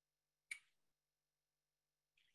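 Near silence, broken by one short, sharp click about half a second in.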